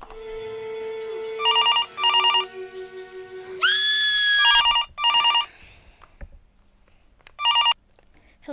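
Landline telephone ringing in a trilling double-ring pattern: two double rings, then a single burst near the end. A sustained music chord plays under the first half, and a loud tone slides up and holds for about a second between the rings.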